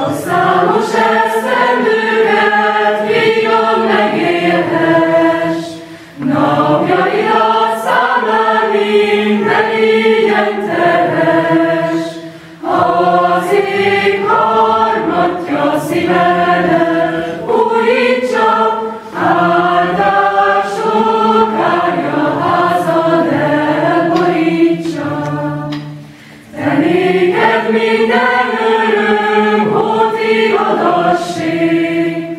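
A mixed secondary-school choir singing in several parts, in phrases broken by short pauses for breath about 6, 12 and 26 seconds in.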